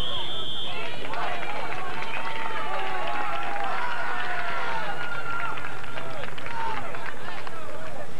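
Spectators and players shouting during a soccer game. Several voices overlap, with long drawn-out yells in the middle.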